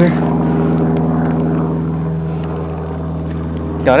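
A steady, low engine drone holding one pitch throughout, from a large engine running nearby. A short spoken word cuts in at the very end.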